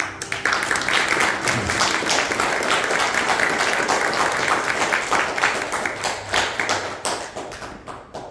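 Congregation applauding in a small church, many hands clapping at once, the applause dying away near the end.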